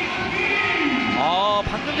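Music playing in a volleyball arena over the steady din of the crowd, with voices mixed in.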